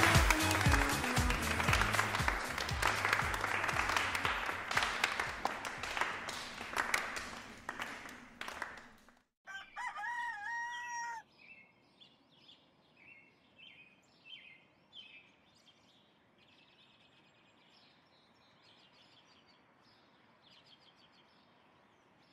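Music fades out over about nine seconds. After a brief gap a rooster crows once, and a run of bird chirps follows, thinning to faint bird calls.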